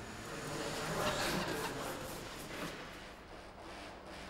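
Car front wheel being steered on an MOT turn plate as the steering is turned toward full lock. It makes a faint, even scraping and rolling noise that swells about a second in and then fades.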